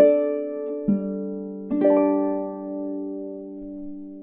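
Double-strung harp finishing a tune: a plucked low note about a second in, then a final chord just before two seconds that is left to ring and slowly fade.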